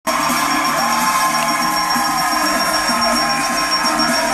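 Upbeat game-show music playing over a studio audience cheering and clapping.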